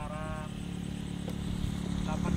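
A vehicle engine idling steadily, a low even hum that slowly grows louder, with a brief voice near the start.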